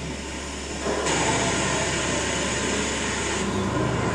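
Soundtrack of a projected video heard over room loudspeakers: a steady rushing, machine-like noise that swells louder about a second in and drops back near the end.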